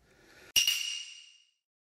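Editing sound effect: a short whoosh leading into a sharp metallic ping that rings out and fades over about a second.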